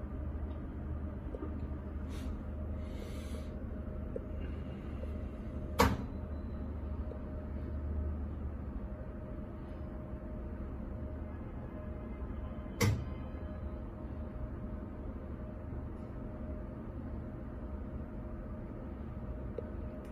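Electrical switchgear and inverter: a steady low hum with two sharp clicks about seven seconds apart. The clicks are typical of contactors or relays changing the supply over between battery and generator.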